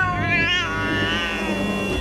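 A cat's long, drawn-out meow that rises and wavers at first, then holds level, over a low rumble.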